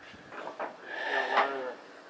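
A distant, indistinct voice of a person calling out off-camera, heard faintly and not clearly enough to make out.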